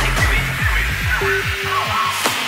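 Progressive psytrance track playing: a steady, repeating kick drum with a rolling bass line. The bass fades out about halfway through, and the kicks stop near the end, leaving a few short synth notes over a hissing wash as the track drops into a breakdown.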